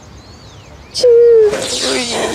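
Faint bird chirps in a lull, then about a second in a click and a loud, high, held vocal exclamation lasting about half a second and falling slightly in pitch, followed by the bustle of people greeting.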